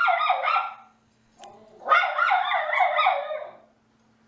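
Miniature schnauzers barking in quick runs of short, pitched barks: one run ends about a second in, and a second run follows after a brief pause.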